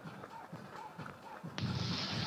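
Faint outdoor race ambience under a pause in the commentary. About one and a half seconds in, a steady rushing hiss comes up.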